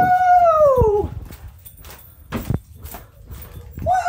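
A man's long, held yell of celebration that drops in pitch and breaks off about a second in, followed by a few knocks from handling, and a second shorter yell near the end.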